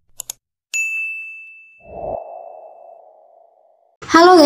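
Intro sound effects for an animated subscribe button: two quick mouse clicks, then a bright bell ding that rings out and slowly decays. About two seconds in, a lower tone comes in with a soft thump and fades away.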